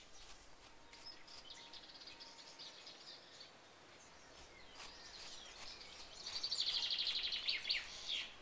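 Songbirds calling faintly: scattered high chirps, then a rapid trill of quickly repeated notes lasting about a second and a half, starting about six seconds in.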